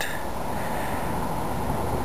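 Wind noise on the microphone in blustery weather: a steady rushing noise, heaviest in the low end.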